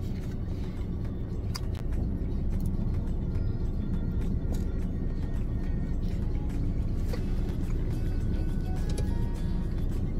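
Background music playing steadily.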